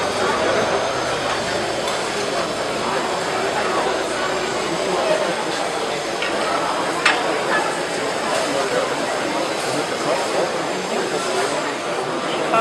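A gouge cutting into a large wooden bowl blank spinning on a wood lathe, a steady rough hiss of shavings being peeled off, under the chatter of a crowd. One sharp click about seven seconds in.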